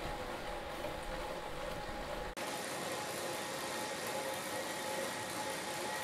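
Bicycle drivetrain on a Wahoo KICKR CORE direct-drive trainer spinning steadily at about 20 mph in the big chainring and smallest cog: an even whir, mostly chain and cassette noise, with faint steady tones. A little over two seconds in, the low rumble drops out abruptly.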